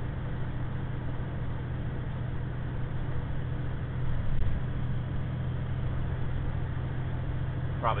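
Diesel engine and road noise heard inside the cab of a 2009 International semi truck cruising at highway speed: a steady low drone.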